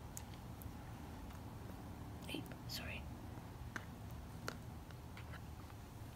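Faint room tone with a few soft clicks from a metal spoon spreading tomato sauce on pizza dough, and a brief whisper about two and a half seconds in.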